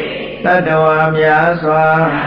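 A man's voice chanting, in the manner of Buddhist devotional chant. About half a second in he starts one long note and holds it at a steady pitch.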